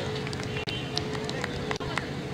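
Open-air ground ambience: faint, indistinct voices of players and onlookers over a steady low hum, with a few light clicks.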